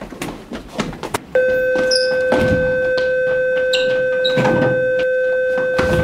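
Short thumps and shuffles, then an electronic bell sounds about a second and a half in. It holds one steady, loud buzzing tone for nearly five seconds, with a few knocks and squeaks over it.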